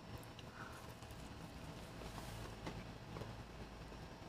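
Faint mouth sounds of a person eating a soft apple fritter: a few soft clicks while she chews and bites, over a low steady room hum.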